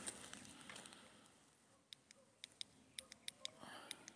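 Near silence with a run of faint, sharp, irregular clicks in the second half, about a dozen in two seconds.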